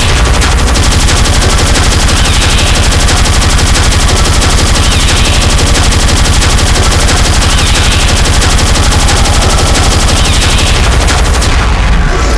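Speedcore electronic music: an extremely fast, heavily distorted kick drum hammering without a break, with a short higher sound recurring about every two and a half seconds. The pattern breaks off just before the end.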